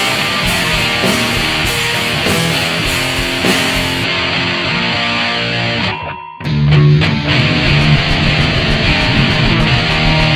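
Punk rock song with electric guitar and a steady beat. The music cuts out for a moment about six seconds in, then comes back in with a heavier low end.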